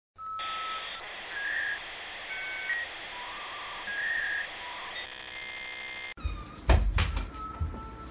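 A short electronic intro jingle: single notes at changing pitches over a steady hiss, ending in a buzzy held chord, cut off abruptly about six seconds in. It is followed by knocks and thumps of a cardboard box being handled on a table.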